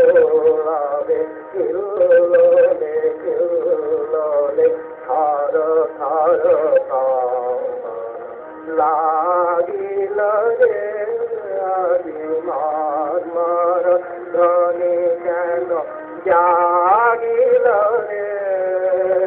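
Background music with a singing voice carrying a wavering, ornamented melody.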